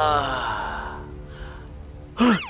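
A male cartoon character's sigh, its pitch falling as it trails off into breath over about a second.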